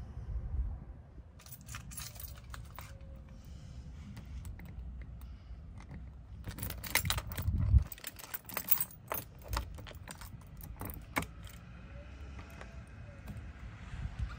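A bunch of house keys jangling and clicking against a brass front-door knob and deadbolt as a key is worked into the lock, in scattered bursts that are busiest about seven seconds in, over a low steady rumble.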